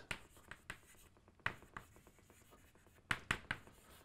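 Chalk writing on a chalkboard: faint short scratching strokes and taps, with sharper taps about a second and a half in and again after three seconds.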